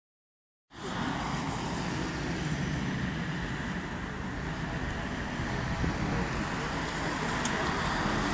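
Steady road traffic noise from cars passing on a nearby road, a continuous rushing hum with a low rumble, starting abruptly just under a second in.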